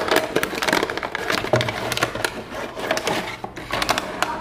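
Cardboard box and its plastic tray being handled and opened: an irregular run of close rustles, scrapes and crackles.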